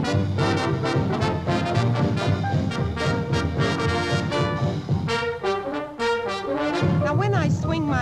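Big-band swing music: the brass section and saxophones play a band intro in short repeated chords over drums. In the last second a woman's singing voice begins.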